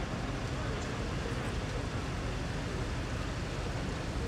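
Steady low rumble of fire-rescue vehicle engines running at the scene of a rope-rescue drill, with no distinct knocks or tones standing out.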